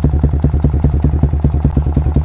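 A 2008 Yamaha Vixion's 150 cc single-cylinder four-stroke engine idling through an aftermarket racing slip-on muffler, not revved. It makes an even, steady putter of about twelve exhaust pulses a second.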